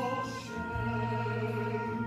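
Operatic-style solo singing with orchestral accompaniment: long held notes over a steady low bass note.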